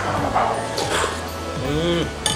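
Background music playing under a man slurping spicy ramen soup from a spoon, followed near the end by a short rising 'mmm' of enjoyment.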